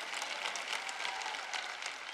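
Scattered, light applause from a large audience, many hands clapping unevenly.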